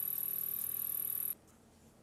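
Mini mill spindle running with an end mill in an aluminium slot, giving a steady high-pitched whine over a low hum. The sound cuts off abruptly about a second and a half in.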